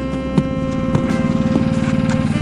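Background music over the steady idle of a small engine on a tracked motorized snow tug (a "motor-dog") that pulls a sled.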